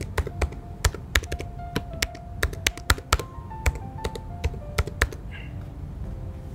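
Computer keyboard typing: an irregular run of sharp keystrokes as a name is typed into a form field, with soft background music underneath.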